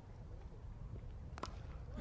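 A single sharp crack of a cricket bat striking the ball, about one and a half seconds in, over a quiet outdoor background with a low rumble.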